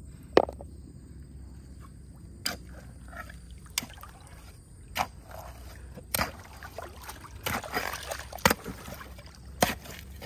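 A short-handled digging tool striking and scraping into stony, gravelly soil. There are about seven sharp knocks spaced a second or so apart, the first the loudest, and a stretch of rough scraping about three-quarters of the way through.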